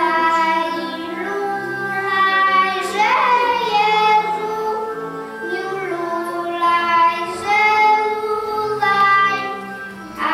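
Young children's voices singing a song together over instrumental accompaniment with a stepping bass line, notes held about a second each.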